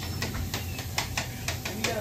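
Close-up eating of a toasted bacon, egg and cheese sandwich with crispy bacon: a string of small crunching clicks as it is bitten and chewed, about four or five a second, over a steady low hum.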